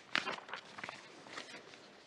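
Faint rustling of paper sheets handled in front of a desk microphone, with one brief louder rustle just after the start and a few softer ones after it.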